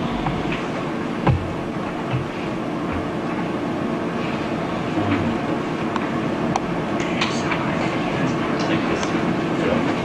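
Indistinct chatter of several people talking among themselves at once in a room, a steady murmur with no single voice standing out. A few light clicks come through, and a single thump about a second in.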